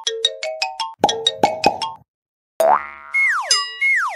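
Cartoon sound effects over children's music: a quick run of bright plinking notes, a brief silence about two seconds in, then one rising glide and two quick falling glides as the cartoon tractor's wheels and body pop into place.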